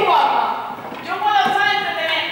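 Several people's voices talking over one another in a sports hall, the words not clear.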